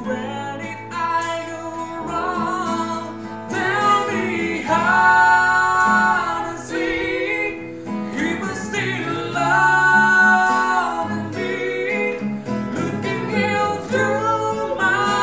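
Male lead singer singing a slow rock ballad over strummed acoustic guitars, holding two long high notes, one about five seconds in and one about ten seconds in.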